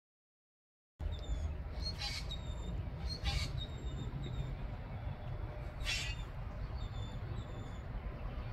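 After about a second of dead silence, birds chirping in the distance, with a few short calls and faint high whistles, over a steady low rumble of wind on the microphone.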